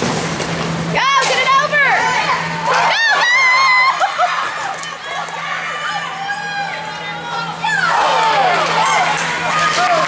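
Spectators at an ice hockey game shouting and yelling, unintelligibly, with several high rising-and-falling calls about a second in and a burst of overlapping voices again near the end. A steady low hum of the rink sits underneath.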